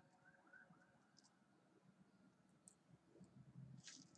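Near silence, with a few faint clicks and light rustles from hands crumbling dried chamomile out of a tea bag onto paper, and a soft low bump near the end.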